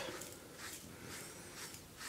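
Faint, soft rubbing of a powder puff wiping sand and powder off a hand, in several brief, irregular brushing strokes.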